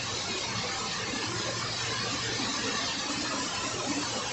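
Steady hiss of rain falling and floodwater running through a flooded street, with a faint low hum underneath.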